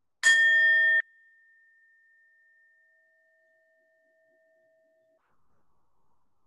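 Handheld singing bowl struck once with a mallet, ringing with several clear tones. The loud ring cuts off suddenly after about a second, leaving a faint tone that fades out over the next few seconds.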